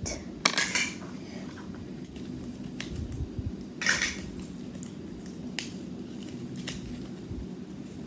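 Small plastic miniature toys and their packaging handled on a tabletop: scattered light clicks and brief rustles, the loudest about four seconds in, over a steady low room hum.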